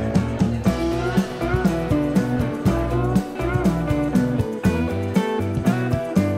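Background music with a steady beat and a shifting melody.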